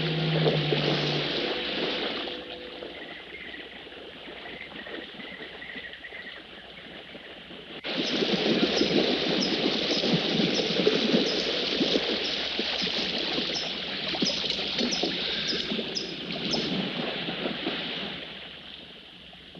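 A swimmer doing the crawl in a pool: steady splashing of arms and water that starts abruptly about eight seconds in, after a quieter stretch. A held orchestral chord fades out just at the start.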